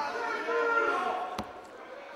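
A voice in the hall, softer than the commentary, drawn out over the first second or so. About a second and a half in comes a single sharp smack.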